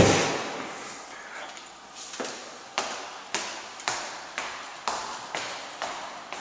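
A loud thump at the very start, then footsteps climbing a staircase, about two steps a second.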